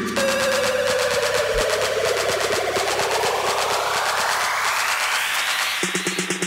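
Electronic dance music build-up from a DJ mix: a noise sweep rising steadily in pitch over about six seconds above a rapid run of repeated hits, with the kick and bass dropped out. A low bass note comes back in near the end.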